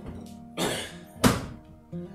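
A recliner sofa's footrest folding down, with a rush of movement and then one loud thunk about a second in, over soft background guitar music.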